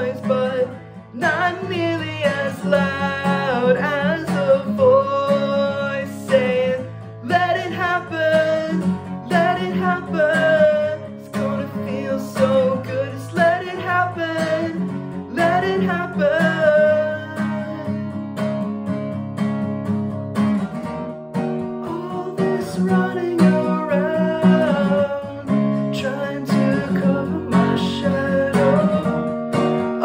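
A man singing while strumming a steel-string acoustic guitar. The bass notes thin out about two-thirds of the way through as the strumming lightens.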